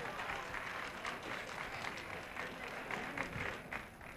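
Audience applauding in a large hall, a fairly faint, steady patter of many hands, with some crowd voices mixed in.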